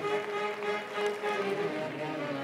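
Recessional music begins: brass instruments playing sustained chords.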